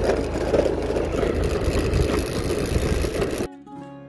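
Wind rushing over the microphone and vehicle running noise while riding along a road, cut off suddenly near the end by plucked acoustic-guitar music.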